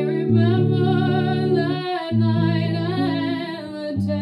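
Music: a woman singing a slow melody with vibrato over her own hollow-body archtop guitar, which sounds sustained chords that change twice.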